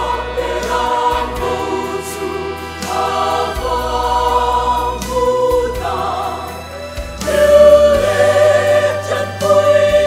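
Mixed choir of women's and men's voices singing a gospel song in harmony, holding chords that change every second or so. It swells louder about seven seconds in.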